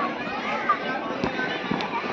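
Many children's voices shouting and chattering together, with a few short sharp clicks in the second half.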